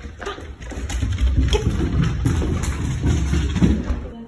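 Low rumbling handling noise with irregular knocks and clicks, like footsteps and movement on wooden floorboards. It stops abruptly at the end.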